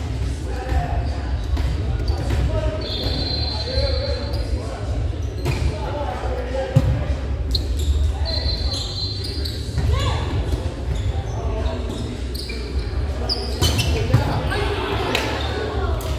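Volleyball rally in a large, echoing gym: sharp ball hits, sneakers squeaking on the hardwood floor, and players' voices calling out over steady hall noise.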